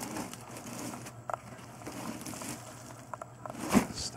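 Hands rummaging through a pile of old cardboard, cables and debris: scattered scrapes and clicks, with one sharp knock near the end.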